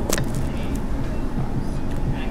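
Restaurant room noise: a steady low rumble, with a single sharp click just after the start.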